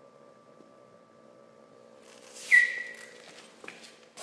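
Faint steady hum of the small computer fan blowing air into a pellet-fired pipe rocket stove. About two and a half seconds in comes one sudden, short, high-pitched ring that fades within about half a second.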